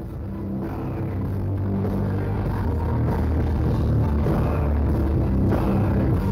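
Gothic metal band playing live, recorded from within the crowd: heavy, sustained low bass notes that swell up in loudness over the first couple of seconds and then hold.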